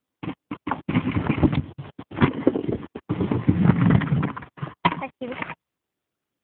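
Irregular rustling and knocking, like leafy branches being shaken and handled. It comes in dense, choppy stretches, heaviest around the middle, and fades out shortly before the end.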